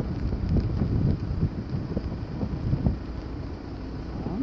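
Wind buffeting a phone's microphone outdoors: an uneven, gusting low rumble.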